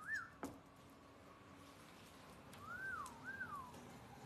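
Whistled notes: a short gliding whistle at the start, then two arched notes near the end, each rising and then falling. A single sharp click comes about half a second in.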